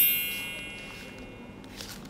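A sparkly chime sound effect: a cluster of high bell-like tones that rings out at the start and fades away over about a second and a half.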